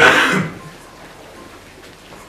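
A man clears his throat once, briefly and loudly, into a handheld microphone, in a pause in his speech.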